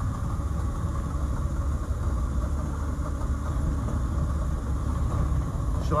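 A 1952 Morris Minor's engine running steadily with road noise as the car drives along, heard from inside the cabin as an even low rumble.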